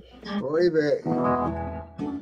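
A brief voice, then a guitar chord strummed about halfway through and left ringing.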